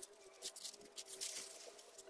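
White paper wrapping crinkling and rustling in quick, scattered crackles as it is pulled open by hand.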